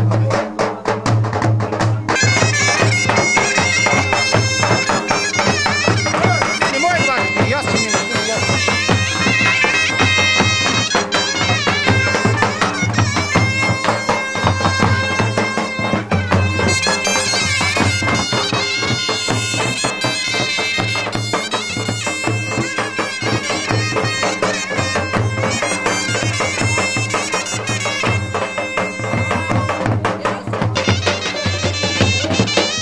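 Bagpipe music: a folk melody played over a steady drone, with a regular low beat underneath.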